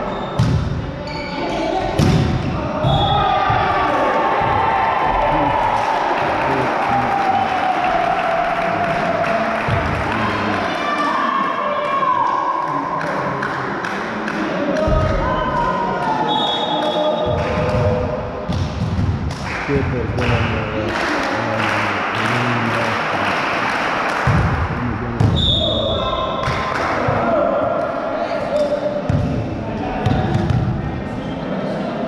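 Indoor volleyball play: repeated ball hits and thuds against a background of players and spectators shouting, with the sharp hits echoing around the gym.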